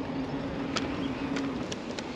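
Bicycle riding along a path: steady rolling and air noise with a faint steady hum and a couple of light clicks.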